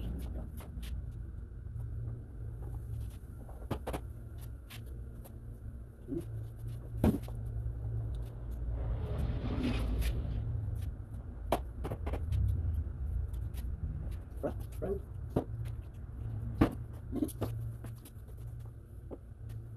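PVC pipes and fittings clicking and knocking against each other as pipe legs are fitted into a PVC frame, with a longer scraping rush about halfway through as a pipe is pushed into a fitting. A steady low hum runs underneath.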